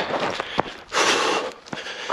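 A trail runner breathing hard from the steep uphill climb, with a long heavy breath about a second in. A couple of footfalls land on a gravel trail.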